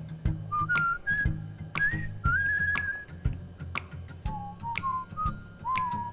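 Background music: a whistled melody over a steady beat of about two beats a second.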